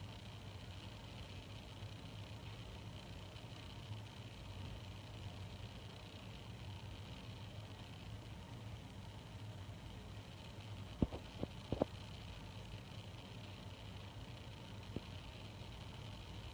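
Faint steady room hum with a light hiss. A few short sharp clicks come close together about eleven seconds in, and a single softer one follows a few seconds later.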